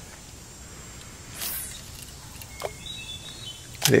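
Quiet outdoor ambience with a brief soft whoosh about a second and a half in and a faint, thin high chirp around the middle; a voice starts right at the end.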